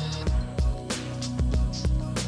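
Background music with a steady beat: drum hits over sustained bass and chord tones.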